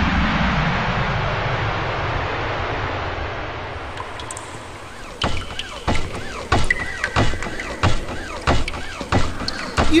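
Spaceship engine sound effect: a whooshing hum that falls in pitch and fades over about four seconds as the craft sets down. Then a run of footsteps, about two a second.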